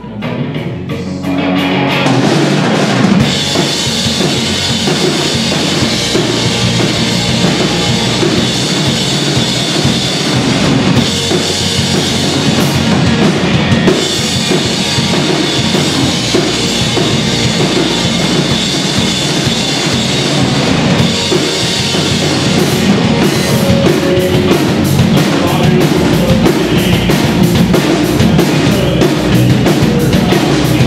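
Live rock band playing a song on electric guitar, bass guitar and drum kit, the full band coming in loud about two seconds in.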